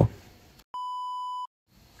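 A single electronic beep, a steady high tone lasting under a second, like a censor bleep edited into the soundtrack. It starts and stops abruptly, with dead silence before and after it.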